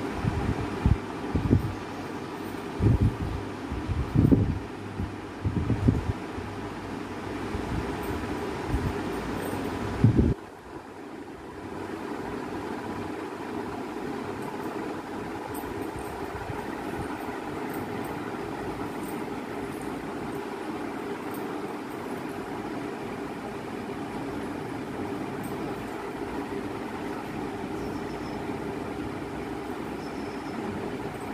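A steady mechanical hum, with irregular low thumps and rumbles over the first ten seconds that stop abruptly about ten seconds in.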